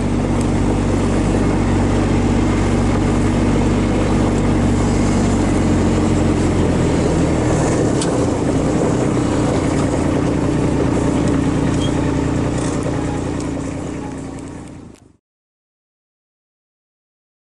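Engine of a John Deere Gator utility vehicle running steadily while driving along a gravel track, heard from the seat. The sound fades near the end and cuts off.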